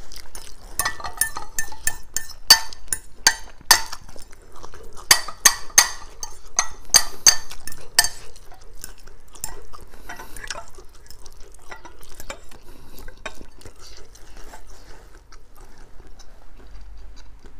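Metal fork clinking and scraping against a ceramic bowl as noodles are stirred and twirled. A quick run of sharp, ringing clinks fills the first half, then gives way to softer scraping and stirring.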